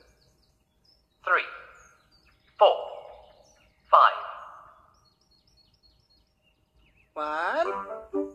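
A cartoon jump sound effect from a children's TV show, played three times about 1.3 s apart. Each one starts suddenly and falls in pitch as it dies away over about a second. Faint bird chirps sound between them, and near the end a voice with music begins, all heard through a TV's speaker.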